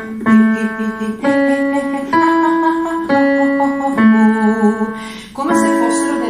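Digital keyboard playing a triad as single sustained notes. The bottom note sounds twice, the notes climb to the top and step back down to the bottom, and then a fuller chord comes in near the end. It gives the pitches for a vocal exercise.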